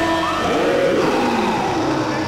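Several cartoon character voices cheering together in overlapping rising and falling shouts, over a held musical note.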